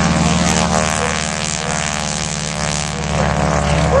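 North American T-6 Texan's Pratt & Whitney R-1340 radial engine and propeller running loudly at a steady pitch.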